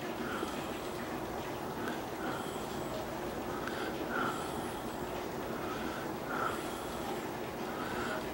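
Steady hiss of rain during a storm, with a few soft breaths through the nose close to the microphone.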